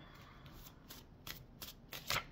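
A deck of cards being shuffled by hand: faint, with an irregular run of short, soft clicks as the cards slap together.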